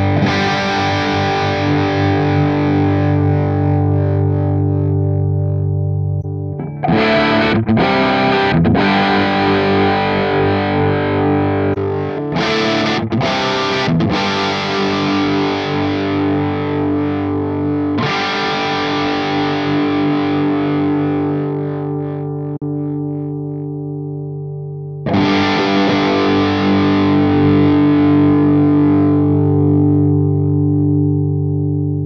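Vintage V100 electric guitar played through the NUX MG-300 multi-effects pedal's amp and cabinet model. Long ringing chords, with new strums about 7, 12, 18 and 25 seconds in, over a backing jam track.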